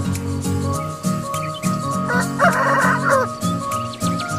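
A gamecock rooster gives one short, harsh crow about two seconds in, over background music with a steady beat.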